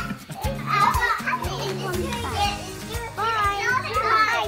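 High-pitched voices of young children chattering and squealing as they play, over background music with a steady beat.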